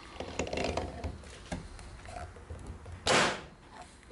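Small metallic clicks and rattles as an antique magneto is worked by hand with a screwdriver to throw a spark across a wide test gap. About three seconds in comes one short, loud hiss.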